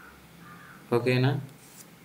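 A man's voice saying "okay" once, about a second in, over faint room hiss.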